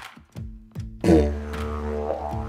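Didgeridoo coming in about a second in, loudest at its start, then holding a steady low drone with a stack of overtones above it.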